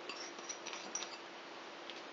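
Granulated sugar poured from a small glass bowl into a mixing bowl of flour: a faint soft trickle with a few light ticks in the first second.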